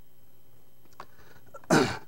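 A man clears his throat once, short and loud, near the end, after a quiet pause with a faint click about a second in.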